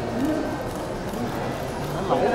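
Background chatter of a crowd of photographers, indistinct voices with no clear words.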